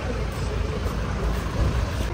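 Busy street noise: a steady low rumble of traffic, with vehicles close by.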